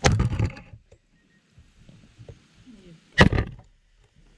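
Machete chopping into a green coconut on a wooden block: two heavy strikes, one at the start and one about three seconds in.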